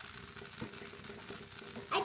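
Small motor of a motorized Num Noms toy running steadily as it moves across the table, with a faint click about half a second in.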